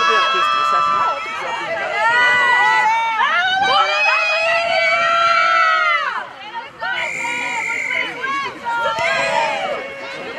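Several high-pitched voices shouting and calling over one another, with a short lull about six seconds in.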